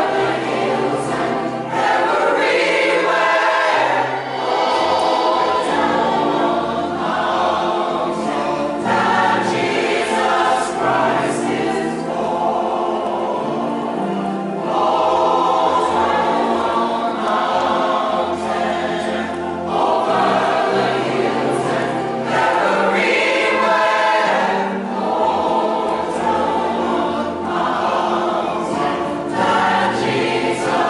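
A church choir of mixed men's and women's voices singing together, in long phrases with brief breaks between them.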